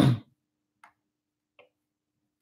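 A brief wordless voiced sound from a person right at the start, then two faint short clicks about three quarters of a second apart.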